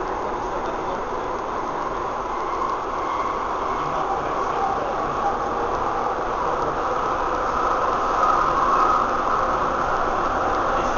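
Cabin noise of a Docklands Light Railway B07 Stock train under way: a steady rumble and hiss from wheels on rail and traction motors, swelling a little about eight to nine seconds in.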